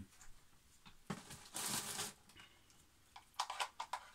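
Handling noise while a lamp is plugged in: a rustle lasting about a second, then a quick run of clicks near the end.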